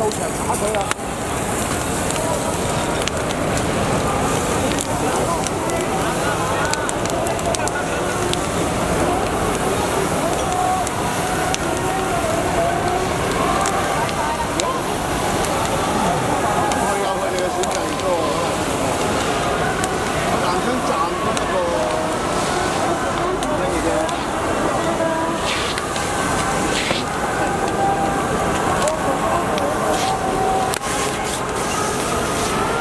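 Many voices talking and calling out in a street crowd, over a burning pile of wooden pallets crackling.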